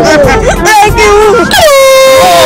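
Voices in the first second and a half, then a sudden, steady blaring horn tone, like an air horn, that holds on past the end.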